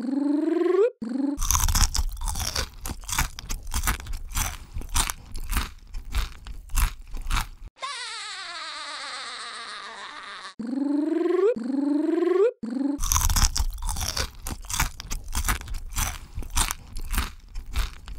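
ASMR eating sound effects: crunchy chewing and biting, a rapid run of crunches in two stretches of about six and five seconds. Between them come a few seconds of a swooping sound effect and short rising cartoon-voice yelps.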